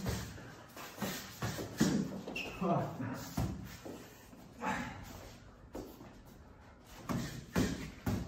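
Boxing gloves landing punches and blocks in sparring: irregular sharp smacks, several close together at the start and a few more spaced out later, with shoes shuffling on a concrete floor in a bare, reverberant room.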